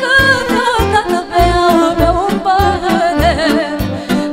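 Live band music: a woman singing, with electric violin and saxophone, over a steady bass beat.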